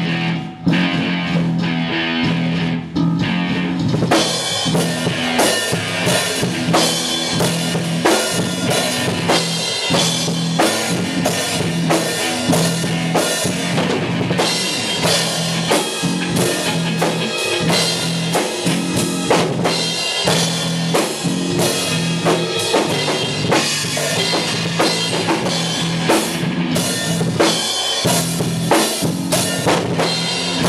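Tama drum kit played in a rock groove with bass drum, snare and cymbals, filling out into a steady, busy beat about four seconds in. A held low guitar note rings underneath.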